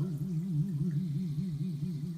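A chanter's voice holds one long note of a Hawaiian hula chant (oli) without words, the pitch trembling rapidly up and down in the ʻiʻi vibrato of chanting.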